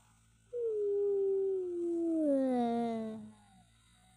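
A single long howl, starting about half a second in and sliding steadily down in pitch over about three seconds.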